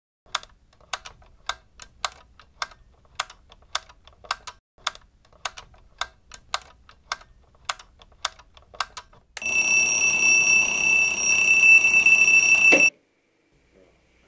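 A Sigma bedside alarm clock ticking, about two ticks a second, then its alarm going off as a loud, steady high-pitched electronic tone that cuts off suddenly after about three and a half seconds, as the alarm is switched off.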